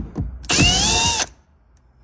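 Electric drill-driver backing a screw out of an interior trim panel: a short click, then the motor runs for under a second with a whine that climbs as it spins up, and stops.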